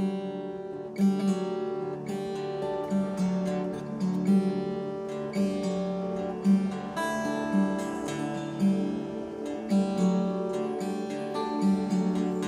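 Instrumental intro of a rock song: guitar playing a repeating picked figure, with strong accented strums about once a second and no vocals yet.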